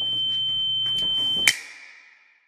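A steady, high-pitched electronic tone like an alarm, over a low hum. About one and a half seconds in it cuts off with a sharp hit, leaving a lower ringing tone that fades away.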